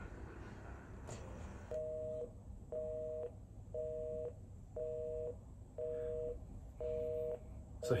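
Telephone busy signal: a two-note beep that repeats about once a second, half a second on and half a second off, starting a couple of seconds in.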